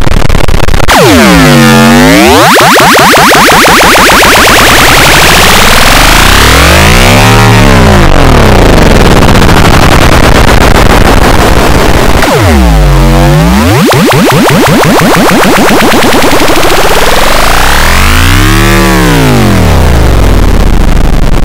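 Samsung phone startup and shutdown jingles run through heavy distorting audio effects. The loud, dense sound keeps swooping down and up in pitch, about every five to six seconds.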